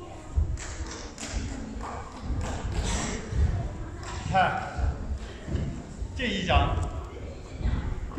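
Soft footsteps thudding irregularly on a carpeted floor as a martial artist walks and turns through a Bagua palm form, with a few sharp swishes of clothing. A man's voice is heard briefly twice in the middle of it.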